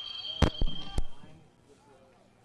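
Three sharp knocks or thumps in quick succession, starting about half a second in, followed by faint open-air background.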